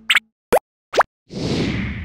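Three short cartoon-style pop sound effects about half a second apart, each a quick upward glide in pitch, then a whoosh that swells near the end and fades out.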